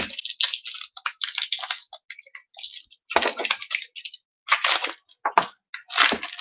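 Trading-card pack wrappers crinkling and tearing as packs are ripped open and handled: irregular crackling in clusters with short pauses.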